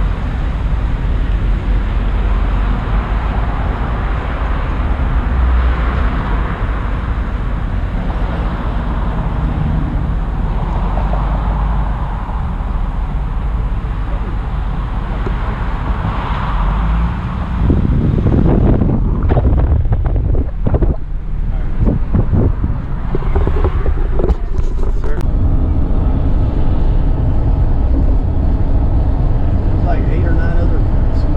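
Steady low rumble of street traffic with wind buffeting the microphone. About two-thirds through, the rumble gives way to a stretch of irregular knocks and muffled, indistinct voices.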